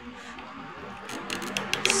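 A plastic hot glue gun being handled: a quiet moment, then from about a second in a quick run of small, sharp clicks as the gun is brought to the work.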